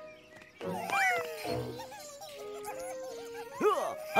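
Cartoon fluffy creatures squeaking and chirping in short warbling calls that slide up and down in pitch, over light background music. A quick run of chirps comes near the end.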